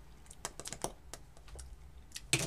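Lips pressed and smacked together to spread freshly applied lipstick: a quick run of small, faint clicks.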